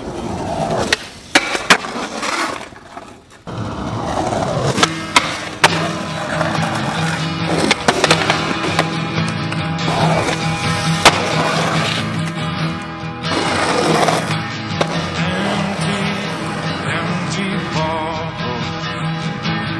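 Skateboard clacks and sharp board impacts on concrete. From about three and a half seconds in, music with a steady low note plays under the skateboard sounds.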